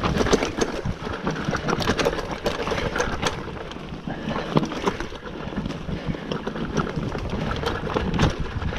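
Scott mountain bike rolling down rocky singletrack: tyres crunching over loose gravel and stone, with the bike rattling and knocking in frequent irregular clicks over the rocks. Wind rumbles on the microphone.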